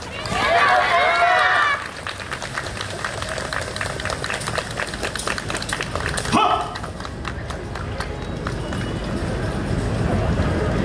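Many quick footsteps of a yosakoi dance team running across a stage floor. Several voices call out together for the first two seconds, and another short shout comes at about six seconds.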